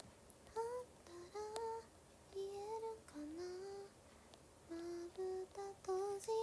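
A young woman softly humming a tune: short held notes in phrases that rise and fall, with brief pauses between them.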